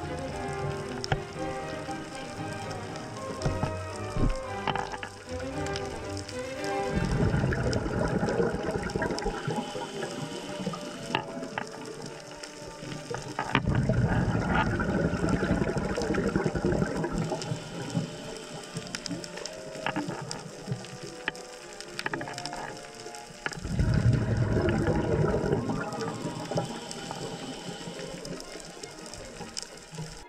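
Scuba regulator exhaust bubbles: three long, low, rumbling swells of bubbling, each a few seconds long and about eight to ten seconds apart, as the diver breathes out underwater.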